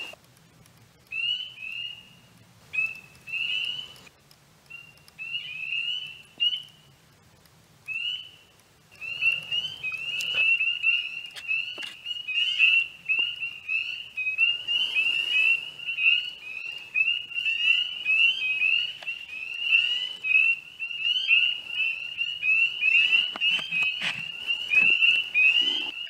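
Spring peepers calling: short, high, rising peeps, a few scattered calls at first, then from about nine seconds in a dense chorus of many frogs overlapping.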